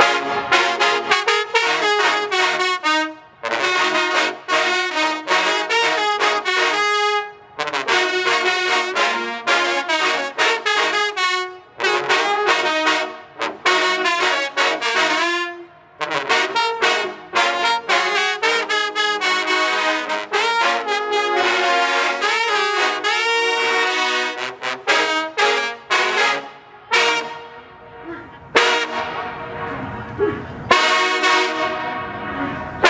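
A large trombone section playing loudly together in harmony, in punchy, tightly articulated phrases with brief breaks every few seconds, breaking into short separate stabs near the end.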